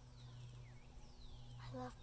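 A steady high-pitched insect drone, with two faint whistles gliding downward in pitch within the first second and a low steady hum underneath.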